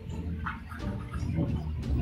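A fork scraping and tapping in a plastic container of chicken macaroni salad as a forkful is scooped up, with a brief scrape about half a second in and a few soft clicks.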